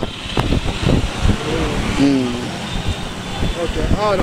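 People's voices talking over steady outdoor street noise, with a few short knocks in the first second.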